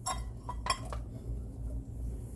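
A few sharp clinks and knocks in the first second, then fainter ticks: a kitchen utensil striking the rim of a red enamelled pot as diced raw potatoes are tipped into the soup, over a steady low hum.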